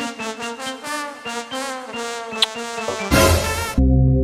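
Background music: a brass-like melody in quick short notes. About three seconds in, a loud rushing burst of noise cuts across it for under a second, and a low held tone follows.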